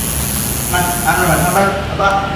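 Indistinct voices talking over a steady low rumble and hiss, the talk starting about three-quarters of a second in.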